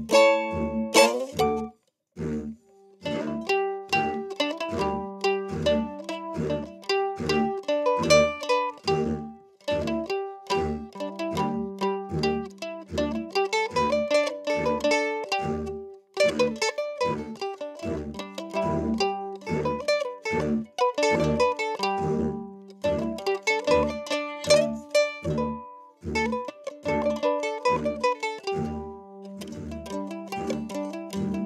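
F-style mandolin picked in an instrumental tune, with a steady low beat underneath. The playing breaks off briefly about two seconds in, then carries on.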